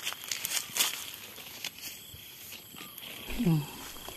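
Dry fallen leaves crackling and rustling underfoot, a few sharp crunches in the first couple of seconds. A little after three seconds in there is a short low vocal sound falling in pitch.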